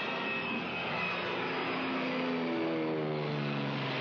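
Cartoon soundtrack sound effect: a steady, noisy roar like a rushing vehicle, joined in the second half by a low droning tone that slides slightly down in pitch.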